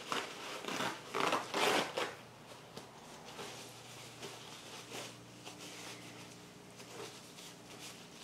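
Rustling and handling noises as things are moved about on a plastic-covered work table, loudest in the first two seconds, then fainter scattered clicks over a faint steady hum.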